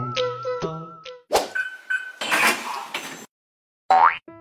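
Playful background music that stops about a second in, followed by edited cartoon sound effects: a sharp hit, two short beeps, a burst of noise about a second long, a brief silence, and a quick rising glide near the end.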